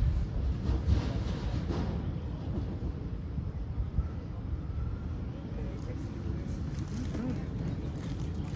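Outdoor background noise: a steady low rumble with faint, indistinct voices now and then, loudest near the end.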